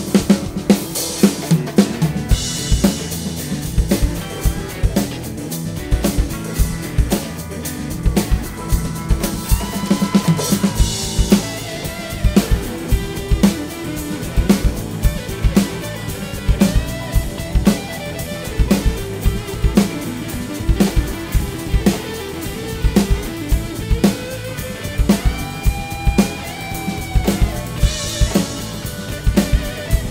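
Acoustic drum kit playing a steady rock groove along with the recorded song: bass drum and snare on a regular beat, with a few cymbal crashes over the band track.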